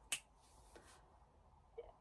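A single sharp finger snap.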